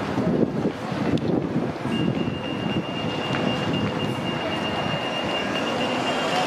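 Double-decker bus coming past close by, with a steady high whine that sets in about two seconds in, over street noise and gusts of wind on the microphone.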